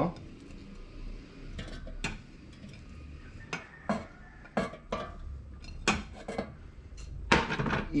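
Raw potato sticks being tipped and placed by hand from a ceramic bowl into an air fryer basket, with irregular clinks and knocks as the bowl and the pieces strike the basket.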